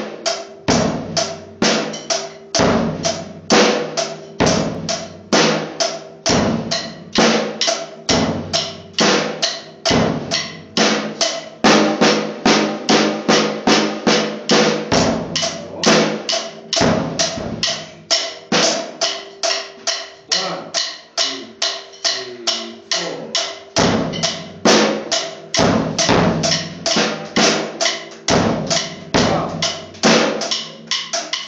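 A drum kit played with sticks: a steady, busy rhythm of snare, bass drum and cymbal strokes. The low bass-drum thuds drop out for a few seconds past the middle, then return.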